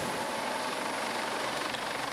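Air ambulance helicopter lifting off, its rotor and turbine engines making a steady, even noise.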